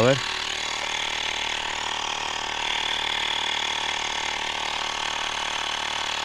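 Compact portable electric tyre inflator running steadily while pumping up the punctured front tyre of a small motorcycle.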